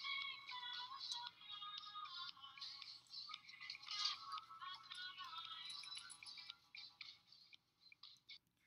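Faint, thin-sounding song with singing, heard as music playing in a cashier's headphones in the film's soundtrack; it stops shortly before the end.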